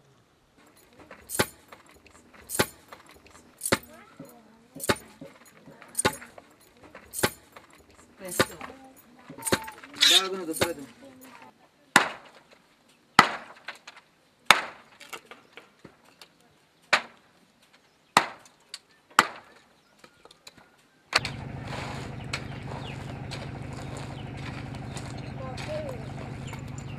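Wood being chopped with a hand blade on a wooden block: a long series of sharp chopping strokes, about one every second or so, with a few quicker blows in between. Near the end the strokes stop and a steady low hum takes over.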